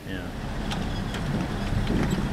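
Steady engine and road noise from inside a moving car.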